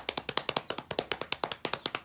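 A drum roll played with the hands on a tabletop: a rapid, even run of taps that keeps going without a break.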